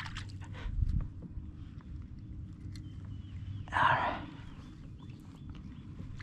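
Faint bird chirps, a run of short repeated calls, over a low steady rumble, with a dull thump about a second in and a short rush of noise about four seconds in.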